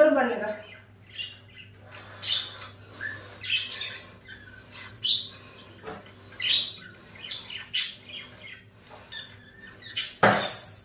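Short bird squawks and chirps, one about every second, over a steady low hum.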